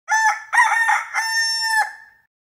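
A chicken crowing: one full cock-a-doodle-doo, a few short choppy notes, then a long held final note that falls away near the end.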